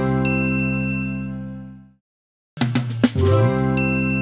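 A short TV-show ident jingle, played twice. Each time a quick musical flourish ends on a held chord with a bright chime on top, which rings out and fades over about two seconds. After a brief silence the same sting starts again.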